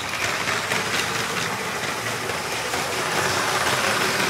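Steady, rumbling, engine-like sound effect under the channel intro. It stays at an even level throughout.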